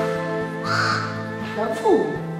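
Soft background music with long held tones. About a second in, a harsh caw-like call sounds once, and near the end a voice slides downward in pitch.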